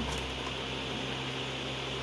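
Steady background hiss with a low hum underneath, with no distinct events.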